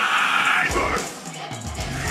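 Metal band playing live: a harsh screamed vocal at the start, over stop-start hits of bass guitar and drums that drop out and come back in.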